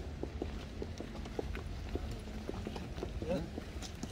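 Footsteps of a group of people walking on pavement, many short irregular steps, with faint voices of the group.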